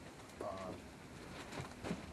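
A man's drawn-out, hesitant "uh", held briefly on one pitch, then a pause with faint room tone.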